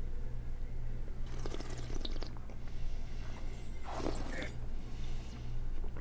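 Quiet sips and slurps of red wine from glasses over a steady low electrical hum, the loudest a short hissing slurp about four seconds in.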